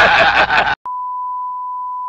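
Loud laughing voices cut off suddenly, and a moment later a steady 1 kHz test tone begins: the single-pitch beep played with TV colour bars.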